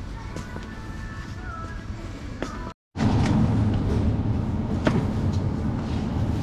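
Supermarket ambience with faint in-store background music. It cuts off abruptly about three seconds in, and a louder low rumble of store noise with a few scattered clicks and rustles takes over.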